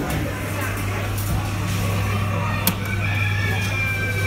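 A steady low electrical hum that switches on suddenly at the start, with faint thin high-pitched steady tones joining about halfway through, over background shop noise.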